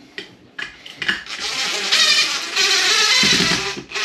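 Cordless drill driving screws through a light-switch back box into wall plugs. Its motor runs for about two and a half seconds, with a brief dip partway through, and stops just before the end.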